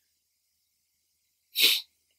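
Silence, then one short, sharp breath sound through the nose or mouth near the end.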